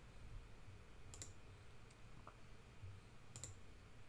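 Faint computer mouse clicks, one about a second in and another near the end, over a quiet low room hum.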